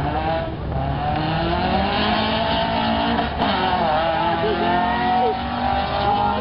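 Two four-cylinder cars, a stock 2012 Hyundai Accent and a Honda Civic, accelerating hard down a drag strip. Their engine notes rise in pitch, drop at a gear change about three and a half seconds in, then climb again.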